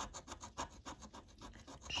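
Metal scratching tool scraping the scratch-off coating from a Lotto scratch card in rapid short strokes, faint and papery.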